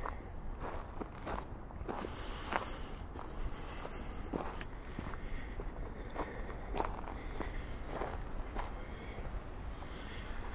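Footsteps of a person walking at a steady, leisurely pace on a dirt forest trail, a soft step a little under twice a second, over a low steady rumble.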